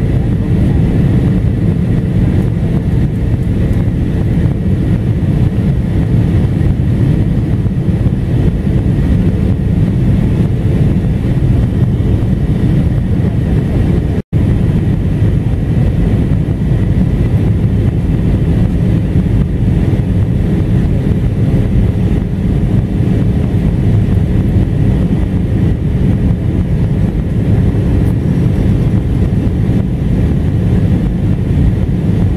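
Airbus A320 cabin noise in flight: the steady, deep roar of the engines and airflow heard from a seat behind the wing, with a faint steady hum running through it. The sound cuts out for an instant about halfway through.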